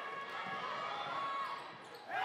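Basketball game sound in a gymnasium: a ball bouncing on the hardwood court among crowd voices during a fast break. The sound drops away briefly near the end.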